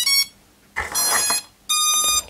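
SJRC F11 Pro drone playing its power-on jingle, a little tune of electronic tones in three short bursts, as the drone switches on.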